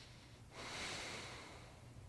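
A man breathing audibly during a core exercise: one hissy exhale starting about half a second in and fading out over about a second.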